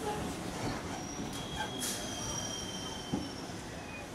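Electric local train running along the rails, wheels rumbling, with thin high-pitched wheel squeals from about a second in that last around two seconds.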